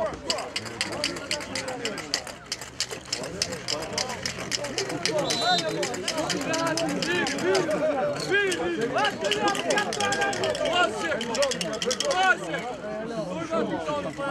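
Distant shouting voices of football players and onlookers calling across an open pitch, with a rapid, even clicking through most of it that thins out near the end.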